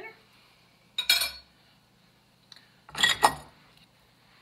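Two brief clatters of kitchen utensils and dishes, one about a second in and a louder one about three seconds in.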